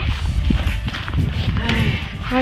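Low rumbling noise on a handheld camera's microphone outdoors, with a single dull knock about half a second in and faint voices near the end.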